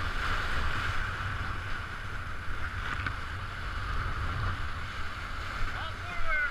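Whitewater rapids of a river running very high, rushing steadily around an inflatable raft, with a low rumble of wind buffeting the microphone.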